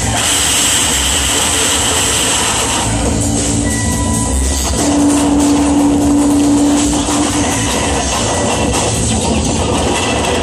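Loud live experimental music: a dense, noisy wash over pulsing low end. A single held low tone comes in about halfway through and stops a couple of seconds later.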